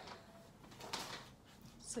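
Quiet room with a faint, brief rustle about a second in.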